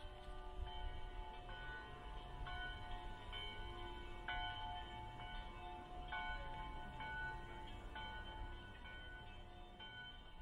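The Loreta carillon in Prague playing a slow melody, one bell note struck after another, each ringing on into the next.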